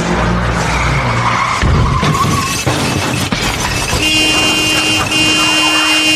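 Car sound effects in the intro of a Eurodance track: a car driving and skidding, then a steady held tone near the end, broken once partway.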